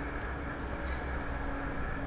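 Steady low background hum with a faint steady tone and no distinct event.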